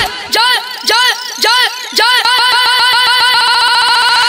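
Instrumental break in a Bhojpuri devotional song: the beat and bass drop out, and a synthesized tone sweeps up and down in pitch, about twice a second at first, then quickens into a fast warble over the second half.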